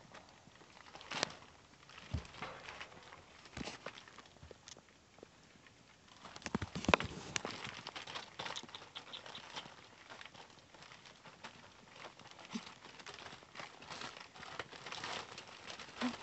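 Zuchon puppies scrambling and play-fighting on newspaper: rustling paper, pattering paws and scattered small knocks, quiet at first and busier in the second half.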